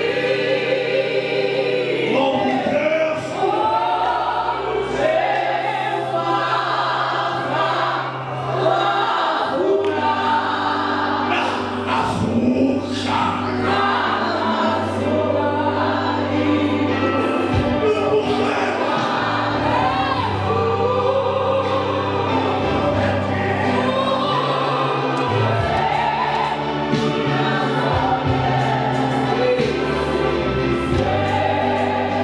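Church congregation singing a gospel hymn together in harmony, many voices, over steady low bass notes that change every few seconds.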